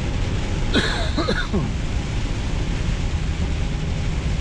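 Steady low rumble and hiss inside a truck cab on a wet motorway in rain: the engine and the tyres on the wet road. A short vocal sound about a second in.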